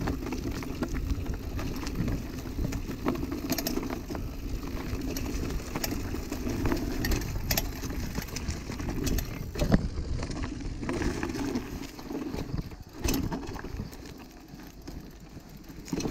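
Hardtail mountain bike ridden along a forest dirt trail: steady rumble of tyres on dirt and wind on the microphone, with a few sharp clacks from the bike as it goes over bumps. The ride gets quieter near the end.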